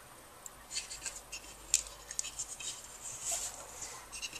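Paracord 550 rustling and rubbing as it is passed around and under the strands of a hand-tied bracelet braid, with small scattered clicks and scrapes; one sharper click just before the halfway mark. The sound is quiet throughout.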